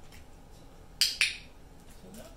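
Two sharp clicks a fifth of a second apart, about a second in, over quiet room background.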